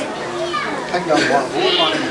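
Overlapping chatter of several people, adults and children, talking at once in a crowded room.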